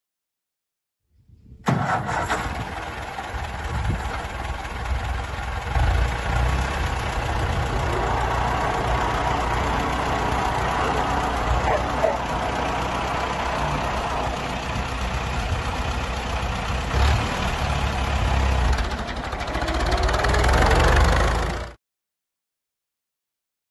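1948 David Brown Cropmaster tractor's four-cylinder TVO engine running, coming in suddenly about two seconds in and then running steadily as the tractor is driven, getting louder near the end.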